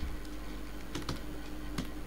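Three keystrokes on a computer keyboard, about a second in, just after, and near the end, over a steady low hum.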